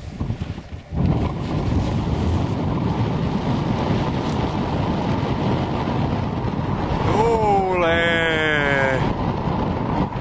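Wind buffeting a microphone whose windscreen is too small, a loud steady rumble from about a second in. Near the end, a man's drawn-out voice glides down in pitch for about two seconds.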